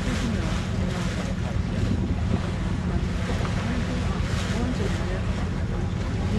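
Wind rushing on the microphone over the steady low drone of a ship's engine and the wash of the sea, all at an even level.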